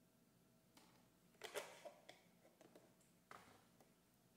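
Mostly near silence while milk is poured from a small carton into a glass mug of coffee, with a few soft knocks and clicks from handling the carton, its cap and the mug. The loudest knock comes about a second and a half in.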